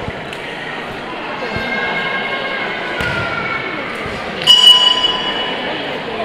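A boxing ring bell struck once about four and a half seconds in, ringing on and slowly fading: the signal to start the round. A hall full of voices murmurs underneath.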